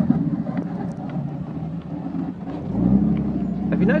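A 4x4's engine running at low revs, heard from inside the cab while driving on sand. It eases off and grows quieter about a second in, then revs up in a short rising sweep near the three-second mark and holds steady.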